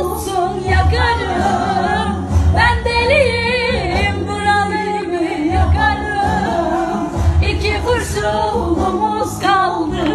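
A singer holding long, wavering ornamented notes of a Turkish song over backing music with a recurring deep bass pulse.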